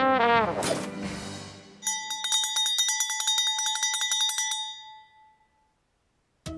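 Trombone playing wavering, sliding notes. About two seconds in, a bell rings rapidly for about two and a half seconds and then dies away.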